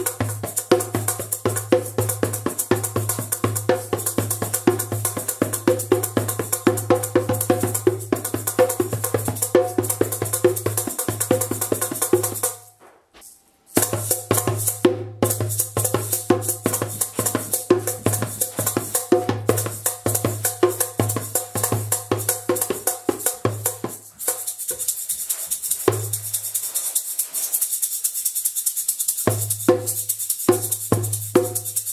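Djembe played by hand in a fast, steady rhythm with a rattling shaker, the drum's deep tone pulsing under dense high strokes. It stops for about a second near the middle. For about five seconds near the end the deep drum tone mostly drops out, leaving lighter strokes, before the full drumming comes back.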